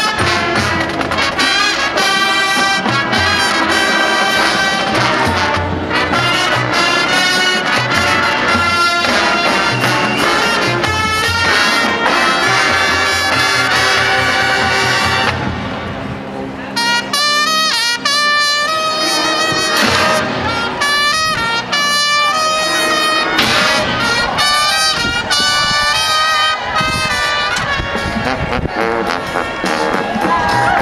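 High school marching band playing its field show: loud brass-led music with trumpets and trombones over front-ensemble percussion. About halfway through it thins out briefly to a quieter passage, then the full brass comes back in.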